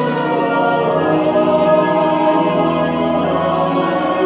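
Church choir singing held chords in parts, accompanied by organ.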